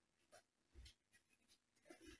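Near silence: room tone with a few faint, brief knocks.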